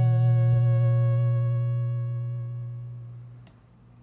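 Sylenth1 software synthesizer sounding a held low note, a steady pitched tone with a stack of overtones that fades away over about three seconds. A faint click comes near the end.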